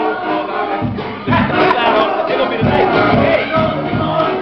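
Loud music playing over a crowd shouting and cheering, many voices at once.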